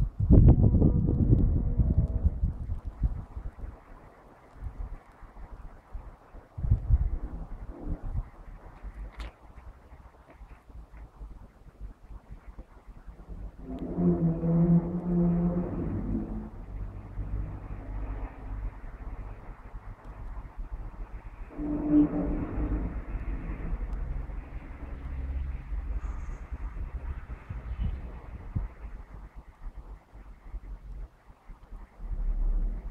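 Low, drawn-out tones with overtones sound over a low rumbling noise: loudest in the first two seconds, again about halfway through, and once more some eight seconds later.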